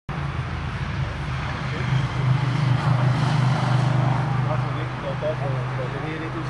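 An engine running steadily with a low hum, swelling a little in the middle, with faint voices in the background.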